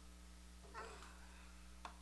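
Near silence with a low steady hum, broken by one brief faint squeal from a toddler about a second in and a single soft click near the end.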